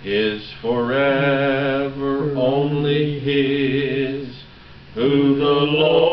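A man singing a slow hymn solo, holding long notes, with a brief pause for breath about four and a half seconds in before the next line.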